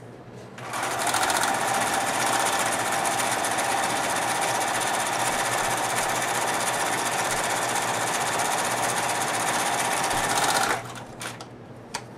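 Domestic electronic sewing machine running at a steady speed, sewing an overcast stitch along the edge of pairs of fabric squares. It starts about half a second in and stops sharply near the end, followed by a couple of light clicks.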